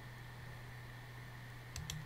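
Quiet room tone with a steady low hum, and two or three faint computer-mouse clicks near the end.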